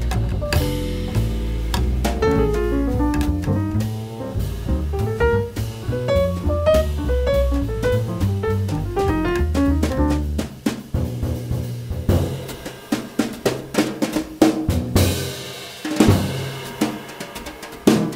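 Jazz piano trio of piano, upright bass and drum kit playing a swing standard. About ten seconds in, the bass and piano drop out and the drum kit plays alone in a break of sharp snare, bass drum and cymbal hits. The piano comes back in at the very end.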